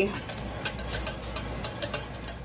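Wire whisk stirring gravy in a stainless steel saucepan, clicking irregularly against the pan several times a second as the flour-thickened broth is whisked, over a steady low hum.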